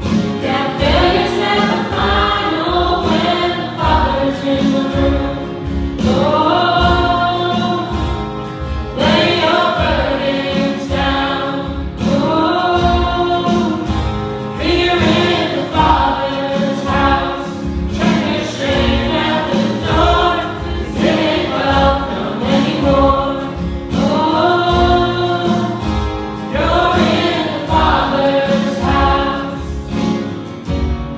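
Live worship band: several men's and women's voices singing together over strummed acoustic guitars and a steady low beat.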